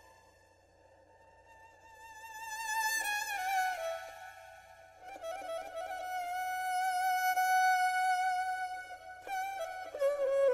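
Background music: a slow solo violin melody that swells up from very quiet. Its notes waver with vibrato, slide downward about three to four seconds in, and then settle into a long held note.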